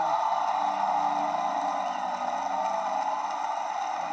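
Large theatre audience applauding and cheering.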